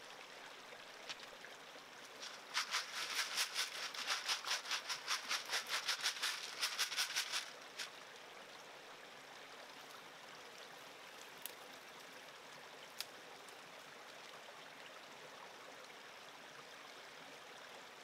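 Gravel and small rocks rattling in a gold-panning classifier sieve, shaken in quick strokes of about five a second for roughly five seconds, starting a couple of seconds in. A creek runs steadily underneath, with a few single clicks of stones later on.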